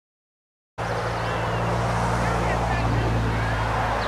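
Brief dead silence at the start, then outdoor sports-field ambience: a steady rumble of wind on the camcorder microphone with faint, distant voices of players and spectators.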